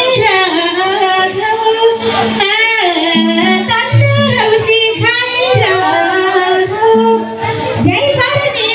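Live Nepali folk song: a woman singing into a microphone through a PA, her voice wavering and ornamented, over held electronic keyboard notes.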